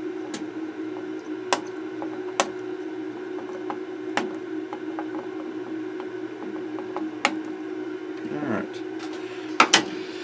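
Flush cutters snipping the trimmed leads of freshly soldered capacitors on a circuit board: about five sharp, irregularly spaced clicks, over a steady low hum.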